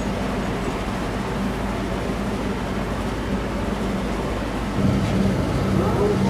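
Heavy vehicle engine running steadily under a noisy background, getting louder and deeper about five seconds in.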